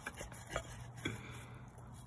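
A wooden stick scraping and knocking inside a metal frying pan that holds a little water, as the pan is scrubbed out. There are four or five sharp knocks in the first second or so, then only faint scraping.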